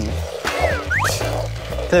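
Background music with a steady bass line. About half a second in, a comic sliding-whistle sound effect falls in pitch and then shoots back up.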